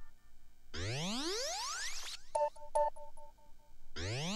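Electronic breakbeat music from a DJ mix: a synth sweep rises in pitch about a second in, then short synth notes repeat and fade away like an echo.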